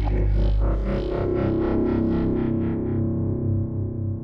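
Channel ident music with a sustained low chord under a quick pulsing figure. The pulses fade out about three seconds in, leaving a soft held chord.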